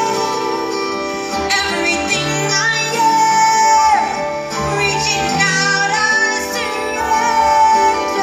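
A woman singing into a microphone over two strummed acoustic guitars, holding long notes, one of which slides down about four seconds in.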